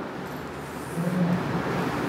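Steady background noise with a faint low hum that swells about a second in.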